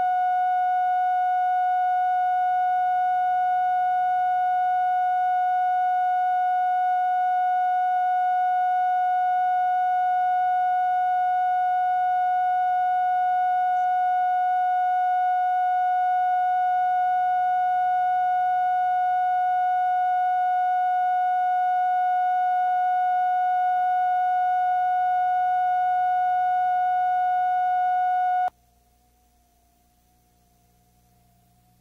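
Steady electronic line-up test tone, the bars-and-tone reference signal on a videotape, held at one pitch and then cutting off suddenly near the end, leaving faint tape hiss and hum.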